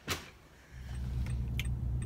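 A short sharp click right at the start, then, from under a second in, the steady low rumble of a car running, heard from inside the cabin.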